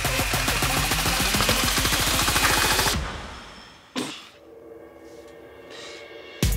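Electronic dance music with a fast beat, fading out about three seconds in; about a second later comes a single sharp hit, then faint sustained tones.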